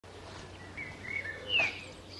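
Bird chirps: a few short calls, then a louder, brief call falling in pitch about one and a half seconds in, over a faint steady low hum.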